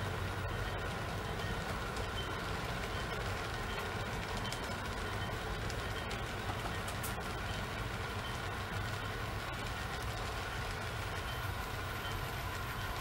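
HO scale model trains running on the layout track: a steady low running noise with a faint steady whine and a few light clicks.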